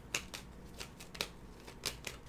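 A deck of tarot cards being shuffled by hand: soft sliding with about five sharp card clicks spread across two seconds.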